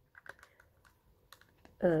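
Faint, irregular clicks and taps of fingers and nails on a clear plastic makeup palette case as it is handled and opened.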